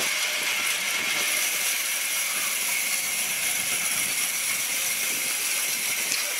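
Sawmill band saw blade cutting lengthwise through a large log: a steady high-pitched hiss with a thin whine running over it.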